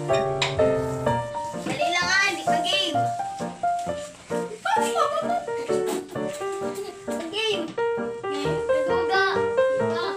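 Background music with a melody of held notes, with high-pitched children's voices breaking in over it several times.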